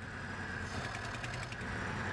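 Lada 2105's four-cylinder engine running steadily at the open twin-barrel carburettor while the throttle linkage is worked by hand. It runs poorly because of carburettor trouble: one throttle plate stays shut even with the lever turned.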